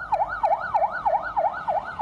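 Police siren on the fast yelp setting, its pitch sweeping rapidly up and down about four times a second.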